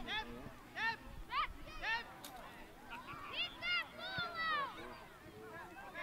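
Indistinct high-pitched shouts and calls from young players and sideline spectators during a youth soccer game: a string of short cries near the start and another cluster around the middle.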